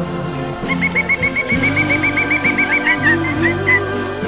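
A woodpecker's rapid run of short repeated call notes, about eight a second, starting about a second in and trailing off into a few slower notes near the end. It is heard over background music.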